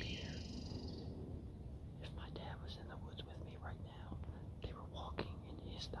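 A man whispering softly to the camera.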